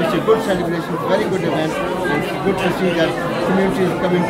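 Speech: a man talking over background crowd chatter.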